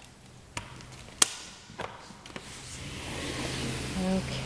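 A person going out through a patio door: four sharp knocks about half a second apart, the loudest a little over a second in, then a hiss that grows louder over the last second or so.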